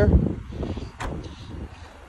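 Outdoor background noise with a low wind rumble on the microphone, fading over the first second and a half. A single sharp click comes about a second in.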